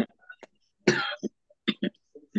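A person coughing once, about a second in, followed by two short throat-clearing sounds.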